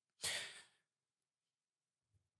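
A man's single short sighing exhale, about a quarter second in and lasting about half a second.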